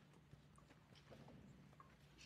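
Near silence: the room tone of a large hall, a steady low hum with a few faint scattered clicks.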